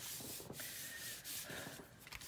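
Hands rubbing and smoothing a sheet of lacy patterned paper down onto a glued cardstock card base: a soft, dry brushing of skin over paper.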